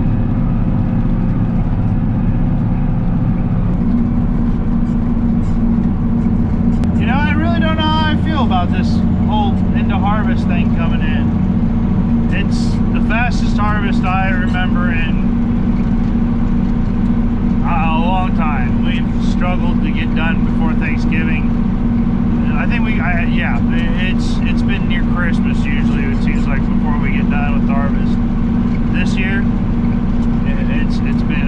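John Deere tractor engine running steadily under load while towing a grain cart, heard from inside the cab; the engine note steps up slightly about four seconds in.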